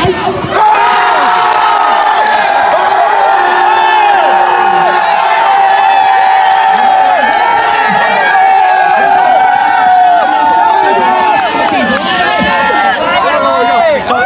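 A crowd of spectators and players cheering and shouting over a goal in a football match. It breaks out suddenly about half a second in and stays loud and dense with many overlapping voices.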